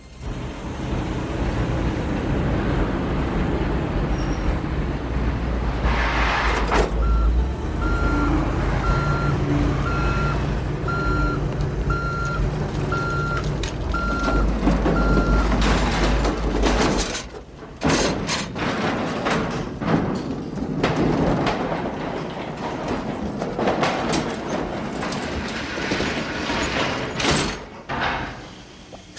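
A heavy engine running with a steady-pitched electronic beep repeating about once a second, about nine times. The rumble stops about seventeen seconds in, and scattered knocks and clatter follow.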